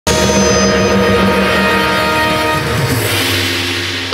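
Instrumental backing-track music starts abruptly with a full, sustained chord of many held notes, which thins out and fades over the last second.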